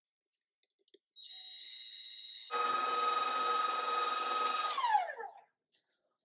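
Electric stand mixer with a wire whisk whipping roasted sweet potato puree at high speed: the motor whine starts about a second in, steps up and grows louder, runs steady, then winds down in pitch near the end as it is switched off.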